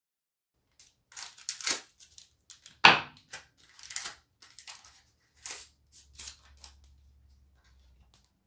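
Foil booster-pack wrapper of a Pokémon card pack crinkling and being torn open by hand, with one sharp, loud tear about three seconds in and more crinkling as the cards are slid out.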